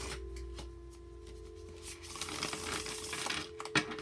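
A tarot deck being shuffled by hand: a soft rustle and riffle of cards, strongest in the second half, over a steady low hum.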